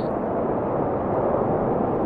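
Sound effect of a steady rushing blast of noise with no pitch, standing for the snow bursting out of the bucket.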